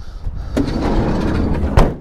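A van's sliding side door rolling along its track and slamming shut near the end.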